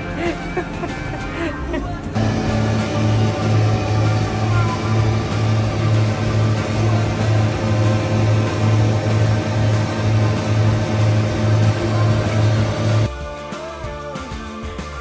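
New Holland tractor engine running steadily with a front-mounted mower cutting grass, a low pulsing hum, under background music. It starts suddenly about two seconds in and cuts off about a second before the end.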